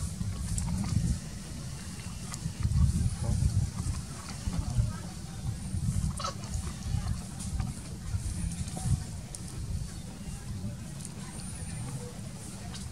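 Uneven low rumble on the microphone throughout, with faint voices in the background.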